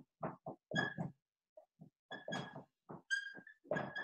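Dry-erase marker writing on a whiteboard: a run of short strokes, several of them squeaking with a thin high squeal.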